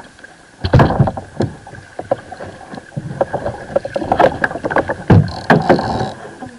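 Irregular knocks and bumps of gear and hands against a fishing kayak while a large kingfish is being landed, the loudest about a second in and again near the end. A faint steady high tone runs under them.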